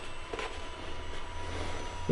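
Steady hum of the Optrel Swiss Air PAPR's battery-powered blower running on its highest flow setting, with faint rustling as a welding helmet is settled down over the mask.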